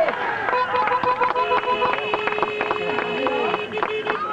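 Horns sounding around the football ground: two overlapping steady blasts at different pitches. The first stops about two seconds in, and the second holds for about two and a half seconds, over spectators' voices and scattered claps.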